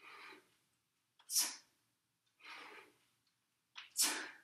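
A man breathing hard during kettlebell front squats, in rhythm with the reps. There is one sharp, forceful exhale about a second and a half in, with softer, longer breaths at the start and just before three seconds.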